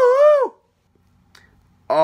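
A man's drawn-out, high-pitched exclamation of surprise, "what", held and then dropping away about half a second in. Then near silence with one faint click, and his speech starts again at the very end.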